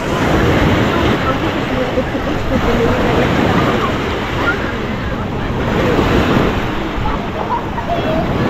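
Small sea waves breaking and washing up over a shingle beach, with the background chatter of many bathers and some wind on the microphone.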